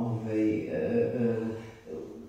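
A woman's voice through a microphone holding one long drawn-out vowel, a spoken hesitation in the middle of a sentence.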